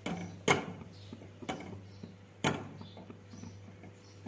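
A silicone spatula knocking and scraping against a metal pan while stirring melted jaggery: three knocks about a second apart, the first and last the loudest.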